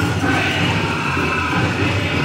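Powwow drum group performing for the dancers: high-pitched singing that slides in pitch over the steady beat of the big drum.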